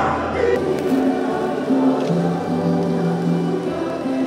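A choir singing, with slow, held notes.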